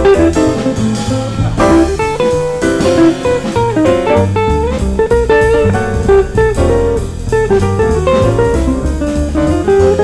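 Jazz quartet playing: an archtop electric guitar plays quick single-note runs over upright bass, grand piano and a drum kit with cymbals.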